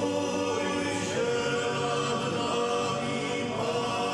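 A men's choir singing a Passion hymn in long held notes, the chord shifting every second or so.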